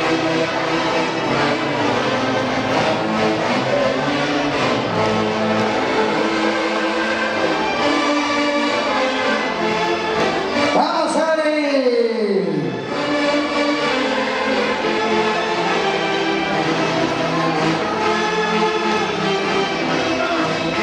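Tunantada dance music played by a live orchestra, steady and loud. About halfway through, a pitch glide falls over about two seconds while the bass briefly drops out, then the full band carries on.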